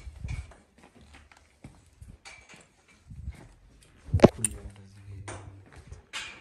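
Scattered knocks and footfalls on a wooden floor as someone moves about handling a phone camera, with one loud sharp knock about four seconds in.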